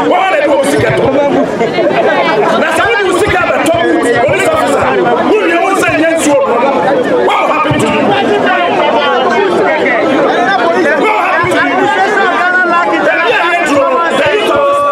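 Speech only: a man talking continuously into a bank of microphones, with other voices chattering around him.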